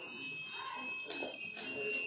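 High-pitched electronic beep from a digital multimeter's continuity buzzer as probes trace connections on a phone circuit board. The tone sounds steadily, dropping out and coming back as contact is made and broken.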